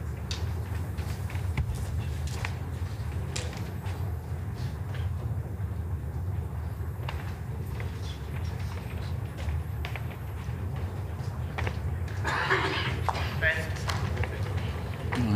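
Hushed indoor bowls-arena ambience while a bowl runs up a portable carpet rink: a steady low hum with a few small, faint clicks. A brief murmur of crowd voices rises near the end as the bowl settles at the head.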